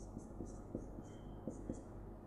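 Faint marker writing on a whiteboard: short squeaky strokes of the felt tip and a few light taps as letters are written.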